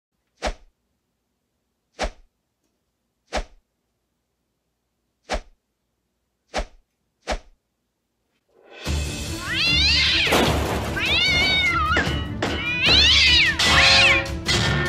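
Six short, sharp thumps a second or two apart with dead silence between them, then, about nine seconds in, music comes in and a cat meows three long, rising-and-falling meows over it.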